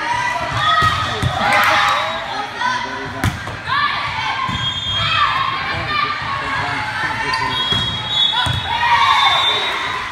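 A volleyball being struck during a rally in a gym, with one sharp ball contact about three seconds in. Voices shout and call throughout.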